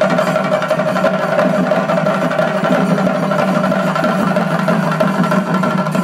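Chenda drum ensemble playing a fast, dense stick-beaten rhythm, with a steady held tone running underneath.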